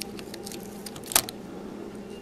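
Small metal drill shavings clicking and clinking as they are gathered up with a magnet, with one sharper click about a second in.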